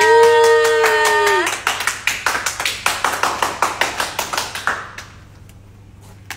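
A voice holding one long sung note for about a second and a half, then hands drumming a fast roll on the hard top of a makeup case, about six or seven taps a second, as a suspense drumroll that fades out near the end, with a couple of single taps after.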